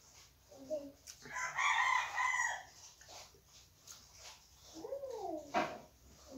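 A rooster crowing once, about a second in, a loud call lasting about a second and a half.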